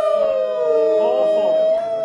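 Several voices singing long, held wordless notes, some sliding down in pitch about a second in, then fading out near the end.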